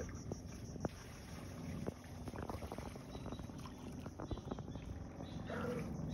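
Faint, steady low background noise with a few soft clicks and taps scattered through it.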